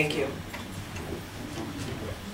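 A man's voice ending a word, then quiet hall room tone with a few faint ticks.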